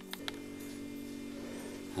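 Two brief soft clicks, then a low steady hum.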